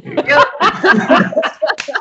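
Several people laughing together over a video call, loud overlapping chuckles and laughs.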